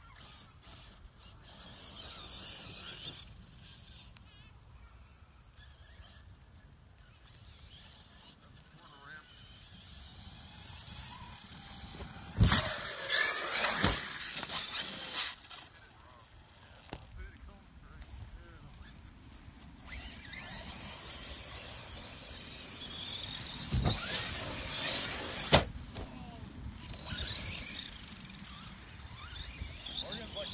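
Radio-controlled cars running on a grass field, their motors giving a faint whine that rises and falls. Several sharp knocks, the loudest about twelve seconds in and again near twenty-five seconds, as the cars hit or land.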